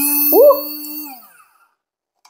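Small battery-powered portable blender's motor switched on briefly: a steady whine that fades and slows to a stop about a second and a half in. A short rising vocal 'oh' overlaps it.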